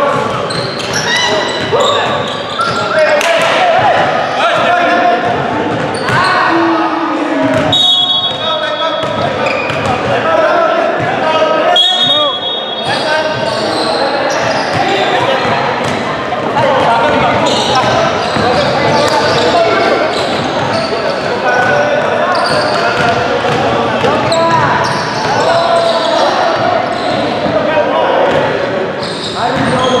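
Echoing basketball-gym hubbub: players' voices overlapping, with a basketball bouncing on the hardwood floor and sharp knocks of play. Two brief high tones cut through, about 8 and 12 seconds in.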